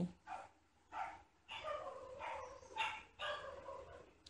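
Whiteboard marker squeaking against the board as lines are drawn, in about five separate strokes. The longest stroke lasts about a second.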